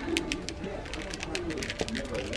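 A toddler babbling softly in low cooing sounds, with light clicks and rustling.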